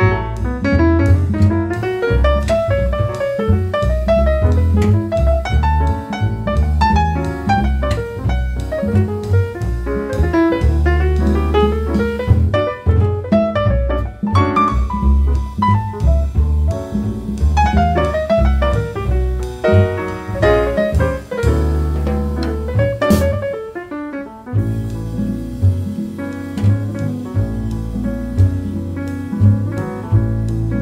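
Live jazz quartet of electric guitar, piano, double bass and drums playing an up-tempo tune, with fast single-note melodic runs rising and falling over a steady double bass line and drums.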